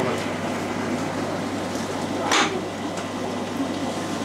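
Steady rushing of aquarium water and filtration with a low electrical hum from the tank equipment, and one brief rushing burst a little past halfway.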